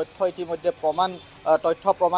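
Speech only: one voice talking steadily in Assamese, with no other sound standing out.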